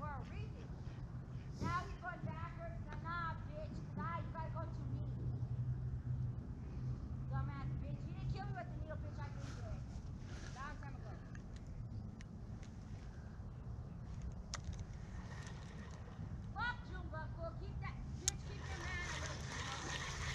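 A woman's raised, high-pitched voice talking to herself in short phrases, heard at a distance, over a steady low hum of road traffic.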